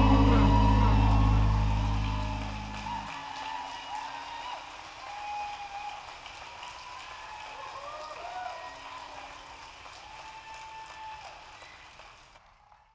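A live band's closing chord rings out and fades over about three seconds, then an audience applauds and cheers, fading away near the end.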